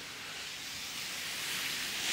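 Steady hiss of street traffic, growing slowly louder as a city bus approaches on the wet, slushy road.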